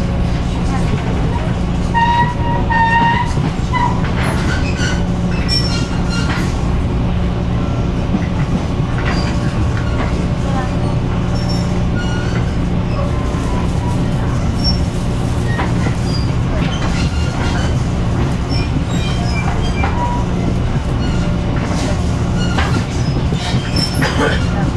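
Taiwan Railway EMU500 electric multiple unit running at speed, heard from inside the passenger car: a steady low rumble of wheels on track and running gear, with occasional brief high-pitched squeaks and ticks on top.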